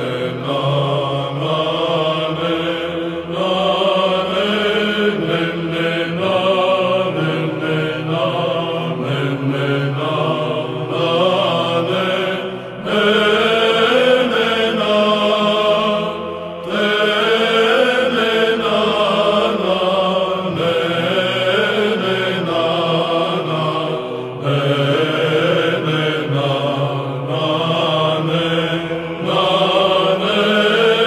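Byzantine psaltic chant: a male choir sings a melismatic kalophonic heirmos in the third tone, its ornamented melody running over a steady held drone (ison).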